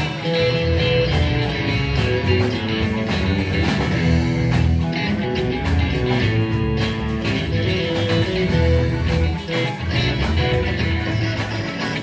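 Rock band playing live: an instrumental stretch with electric guitar lines over bass and a steady drum beat.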